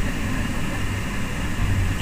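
Steady low rumble of a bus driving along a highway, heard from inside the passenger cabin: engine and road noise with no distinct events.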